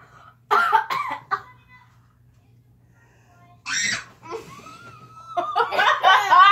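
Girls laughing loudly in bursts, with a quiet gap in the middle and a short harsh burst like a cough about two-thirds of the way through, then more laughter at the end.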